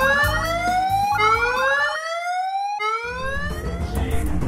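Emergency siren sounding in rising whoops, one sweep about every second and a half, three in all, laid over background music.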